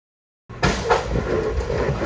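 Toyota 100-series Land Cruiser crawling over rocks under throttle: the engine runs with a steady rumble, and a couple of sharp knocks come from the truck working over the rock. It all starts suddenly about half a second in.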